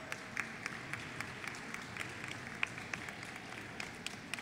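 Audience applauding lightly, with scattered, irregular hand claps over a low background hum of the room.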